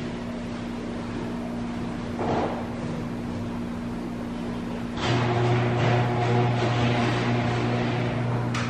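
A steady machine hum from a motor. About five seconds in, a louder, lower drone with a rushing hiss starts up and keeps running.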